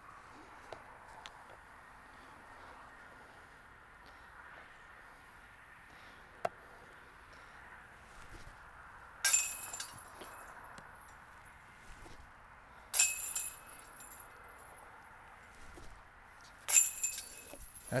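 Golf discs hitting the hanging steel chains of a Dynamic Discs disc golf basket: three short metallic chain jingles about four seconds apart, the first a little past halfway. Each is a putt caught by the chains.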